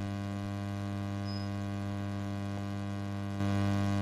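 Steady electrical hum with a ladder of overtones, getting a little louder near the end.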